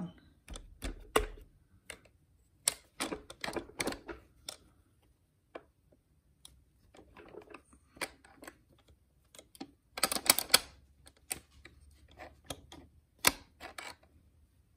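Irregular metallic clicks and clinks of a Mitsubishi DCT470 dual-clutch transmission's steel gears, shift forks and locating pin being pushed down and worked into place by hand. The clicks come in scattered clusters, with the densest rattle about ten seconds in.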